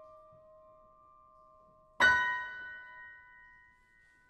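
Grand piano: a chord struck just before rings on and fades, then about two seconds in a loud, bright chord is struck and left to ring, slowly dying away.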